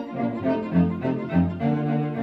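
A string quartet playing, the violins and viola bowing sustained notes together with the cello playing a low, moving line beneath them.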